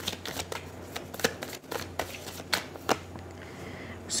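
A tarot deck being shuffled by hand: an irregular run of soft flicks and sharper snaps of card edges, with a faint steady low hum underneath.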